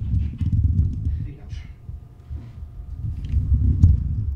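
Handling noise from a handheld camera being carried and moved about: an irregular low rumble with soft thuds on the microphone, loudest near the end.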